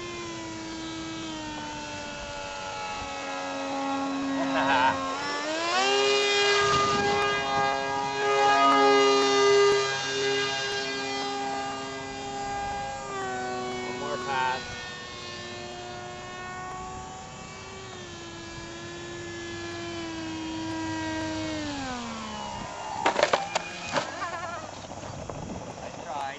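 Motor and propeller of a radio-controlled flying wing whining in flight, the pitch stepping up and down as the throttle changes, then gliding down as the throttle is cut. A few sharp knocks follow near the end.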